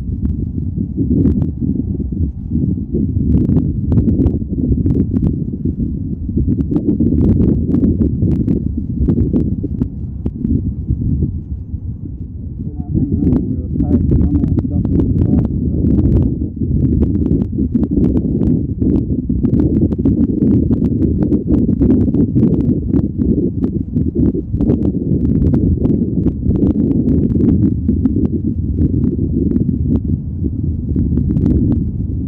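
Strong wind buffeting the microphone: a steady low rumble with frequent crackles, easing briefly about twelve seconds in.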